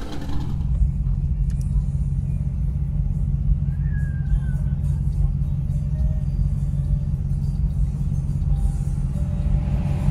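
Steady low rumble of a vehicle driving slowly, heard from inside its cabin, with music playing along with it.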